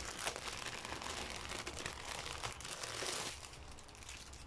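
Plastic bag crinkling as packets of diamond-painting drills are handled, a run of soft crackles that eases off about three seconds in.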